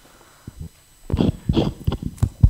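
A person laughing close to a microphone: short breathy bursts, a few per second, starting about a second in after a near-quiet start.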